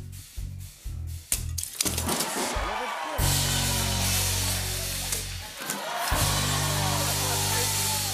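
Upbeat background music with a pulsing bass beat that gives way to long held bass notes about three seconds in, a bright hiss riding over it. A sharp crack cuts through about a second and a half in.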